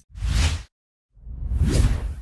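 Two whoosh sound effects from a logo animation: a short swish, then a longer whoosh that swells to a peak near the end.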